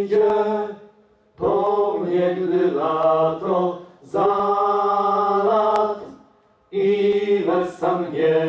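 Several voices singing together in harmony without instruments: held, chant-like sung phrases of about two seconds each, with short pauses between them.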